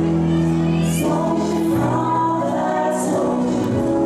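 Slow waltz music, long held chords that change about once a second, playing for the dancers.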